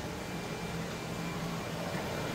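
A steady low hum with an even hiss, like a household appliance or fan running, with no distinct knocks or clicks.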